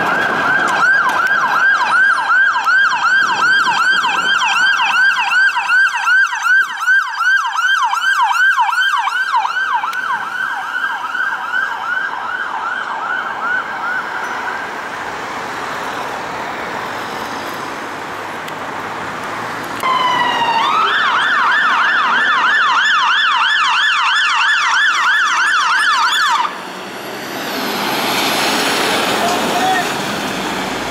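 British emergency vehicle sirens sounding a rapid yelp, sweeping up and down several times a second. The first fades away about halfway through, leaving traffic noise. A second starts with a rising wail about two-thirds of the way in, switches to the yelp, and cuts off suddenly.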